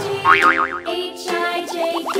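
Children's background music with cartoon sound effects: a wobbling boing in the first second, then a quick run of short rising bloops near the end.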